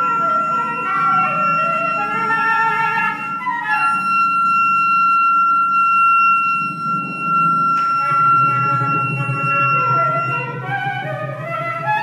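Contemporary chamber music for flute, saxophone and percussion: one wind instrument holds a single high note for about ten seconds while another plays short, shifting notes beneath it. A low rumble of percussion runs underneath and swells in the second half, with a single sharp click about eight seconds in.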